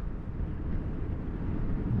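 Honda ADV150 scooter's 149 cc single-cylinder engine running under way at a steady cruising speed, mixed with wind and road noise, slowly getting louder.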